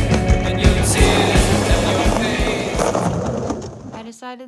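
Skateboard wheels rolling on an asphalt path, with background music playing over them; both fade out near the end.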